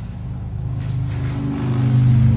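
A low, steady engine drone that grows louder toward the end.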